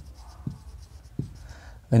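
Marker pen writing on a whiteboard: the felt tip scratching softly across the board as a word is written, with a couple of short sharper taps.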